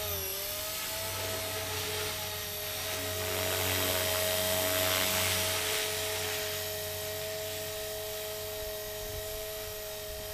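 Blade 300X RC helicopter, fitted with an E-flite 440H brushless motor, in flight at stock head speed: a steady high motor-and-gear whine with rotor noise. It grows louder about midway and eases off toward the end.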